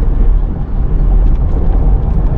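Steady low rumble of a car driving: road and engine noise picked up inside the moving car.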